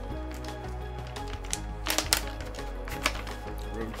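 Plastic jerky bag handled and opened by hand, with a few sharp crinkles and clicks about halfway through and another shortly after, over steady background music.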